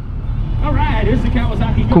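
Kawasaki Ninja 1000SX's inline-four engine idling at a standstill, a steady low rumble, with a man's voice talking over it.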